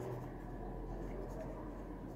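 Faint scratching of a pen writing a word on a sheet of paper.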